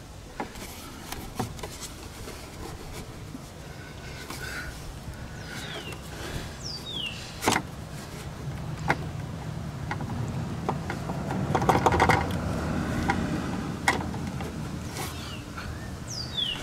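Hands fitting a headlight bulb back into a plastic headlight housing: scattered clicks and knocks of plastic, the sharpest about seven and a half seconds in, over steady low background noise that swells a little past the middle. A few short falling bird chirps come in twice.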